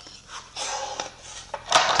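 Melamine board and maple strip sliding and scraping across a table saw's top as they are shifted by hand, with one light knock about halfway through.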